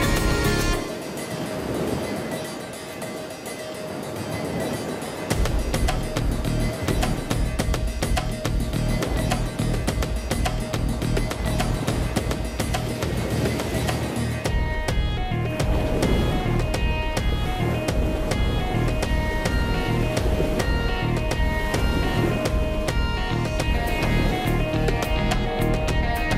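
Background music: the bass drops out for a few seconds about a second in, then comes back with a steady beat.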